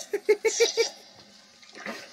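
A man laughing out loud: a quick run of about five short "ha" bursts in the first second, trailing off into quieter, breathy laughter.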